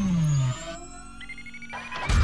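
Synthesized intro sound effects: a long falling sweep that ends about half a second in, then quieter held tones with a slowly rising whine.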